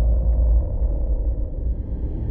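Deep, steady low rumble from a film trailer's opening soundtrack, with a faint mid-pitched tone fading away above it: the tail of a sudden hit that starts just before.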